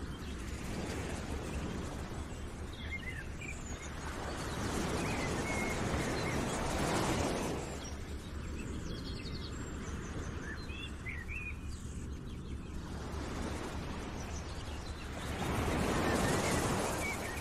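Outdoor nature ambience: a steady rushing noise that swells up twice, like wind or surf, with scattered short bird chirps over it.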